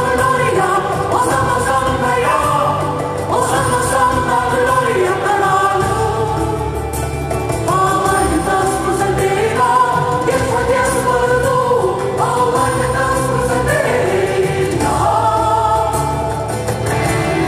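Rock opera music: singing with a choir over band accompaniment, in long held notes that move from pitch to pitch.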